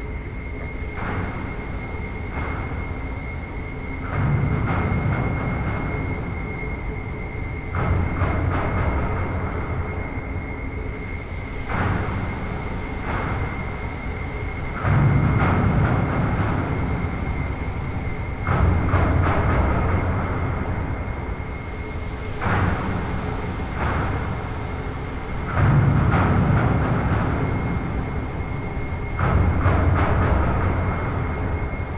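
Fire whoosh sound effect: a rumbling rush that swells up every three to four seconds and dies back, over a steady high-pitched hum.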